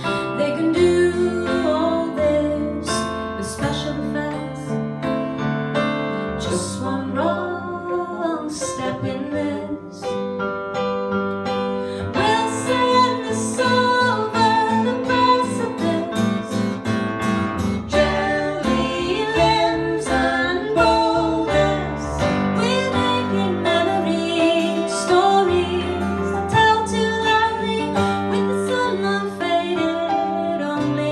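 Live duet music: guitar and piano playing steadily, with a woman's voice singing over them.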